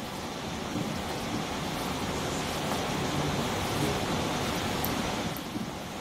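Steady hiss of room noise, swelling slightly in the middle and easing off toward the end.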